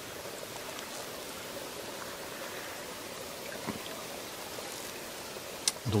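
Small woodland stream running steadily over a shallow bed, a constant even wash of water.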